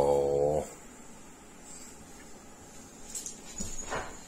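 A cat gives one low, drawn-out call lasting about a second, slightly falling in pitch. A few faint knocks follow near the end.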